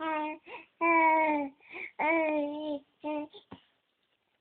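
Baby cooing: a run of drawn-out, sing-song vowel sounds, each about half a second long, with short breathy sounds between them, stopping shortly before the end.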